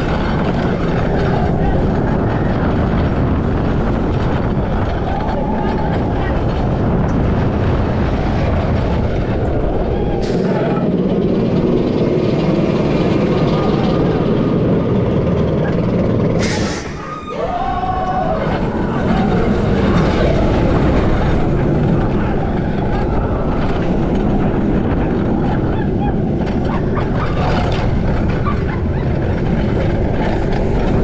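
Boomerang shuttle roller coaster heard from on board: a loud, steady rush of wind and train noise as it runs the course, with a brief lull about 17 seconds in as the train is held at the top of a lift spike under the catch car, then the rush resumes.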